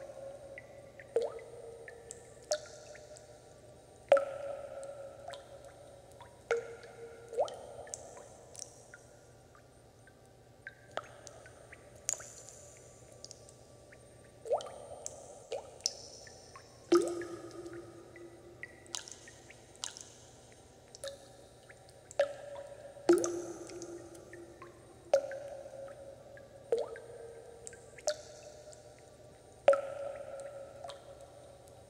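Water dripping: single drops falling into water at irregular intervals, about one every second or two. Each drop is a short ringing plink, and the pitch changes from drop to drop.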